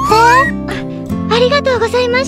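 Cartoon sound effect: a rising whistle-like glide that ends about half a second in, followed by a high-pitched giggle over steady background music.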